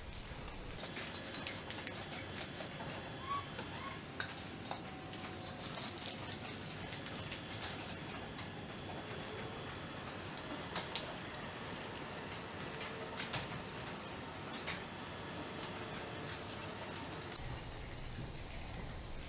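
Steady barn background noise with scattered sharp clicks and knocks from Holstein cows' hooves on the concrete alley of a freestall barn.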